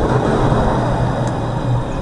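Alstom Citadis tram running past close by and pulling away. Its steady running noise and low motor hum ease slowly toward the end.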